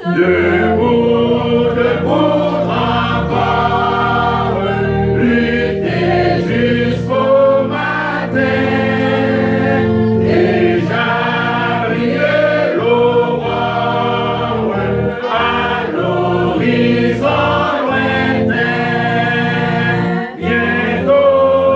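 A church choir and congregation singing a French hymn over sustained organ chords, the voices moving in long held phrases.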